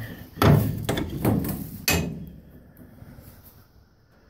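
Steel horse-trailer door being unlatched and swung open: the latch bar and door give three metallic clanks in the first two seconds, then the sound fades away.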